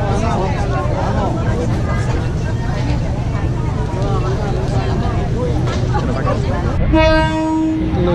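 Train horn sounding one steady note for about a second near the end, over crowd chatter, as the train approaches a market set up on the tracks.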